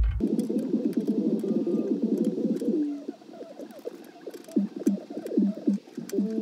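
Music from the car stereo with the subwoofer bass suddenly gone just after the start, leaving a thin mid-range sound while the amplifier's gain is turned. The sound gets quieter and sparser about halfway through.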